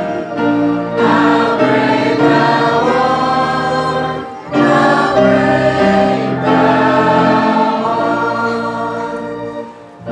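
Church choir singing with organ accompaniment, the organ holding long steady bass notes under the voices. The music breaks briefly about four seconds in and the last phrase fades away near the end.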